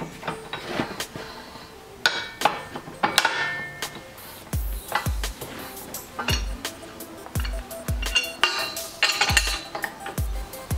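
Sharp metal clinks and knocks from steel pins and a steel tube being handled in a JD2 manual tube bender. Background music with a regular kick-drum beat comes in about halfway.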